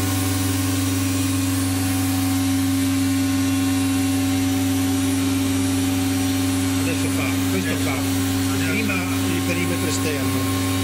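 COSMEC FOX 22 S CNC router running with a steady hum of strong, constant low tones as its gantry and head travel over the empty table in a run without cutting.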